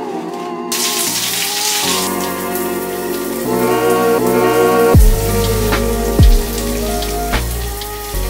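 Shower spray hissing steadily over background music: held chords, then deep bass-drum hits from about five seconds in.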